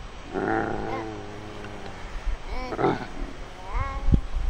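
Dubbed monster noises: a long, low growl, then short grunting calls about two and a half seconds in, and a rising call near the end.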